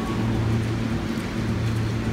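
A steady low hum with a constant background hiss and no distinct sudden sounds.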